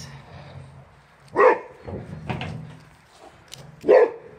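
Boxer dog barking at a wheelbarrow: two short loud barks, about a second and a half in and again near the end.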